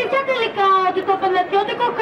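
Only speech: a high-pitched voice talking without pause.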